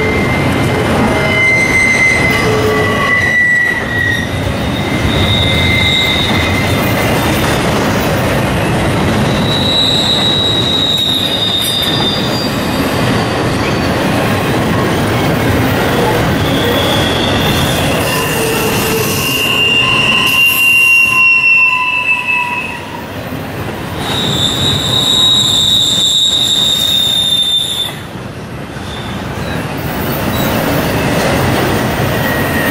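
Double-stack intermodal freight train's well cars rolling past with a steady rumble of wheels on rail. High-pitched wheel squeals come and go throughout, some sliding a little in pitch. The longest and loudest squeal comes near the end.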